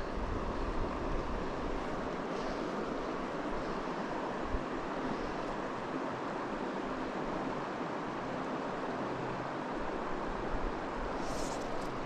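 Steady rush of a shallow river running over rocks, with one brief click about four and a half seconds in.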